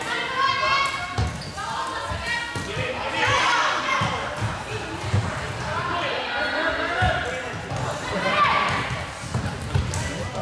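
Floorball game sounds echoing in a sports hall: players calling out to each other over scattered thumps of feet, sticks and ball on the court floor.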